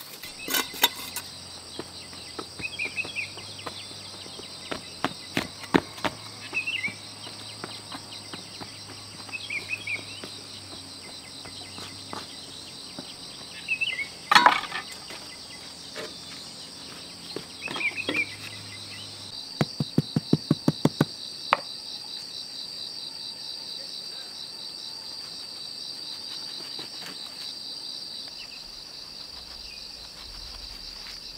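Insects chirring steadily, with scattered scrapes and knocks of a steel trowel and tools on stone, soil and concrete as a garden path is laid. About twenty seconds in comes a quick run of about eight sharp taps.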